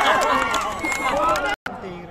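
Several voices shouting and calling out over one another, cut off abruptly about one and a half seconds in. After the cut only faint open-air background remains.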